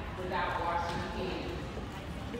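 Indistinct voices talking in a school gymnasium.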